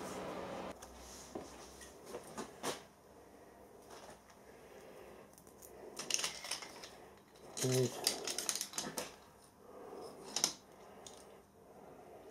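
Light, scattered clicks and knocks of small metal parts being handled and set down on a milling machine's vice and table, with a busier run of clinks in the middle.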